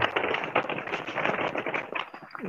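Paper poster rustling and crackling as it is handled and unrolled, a dense run of fine crinkling clicks.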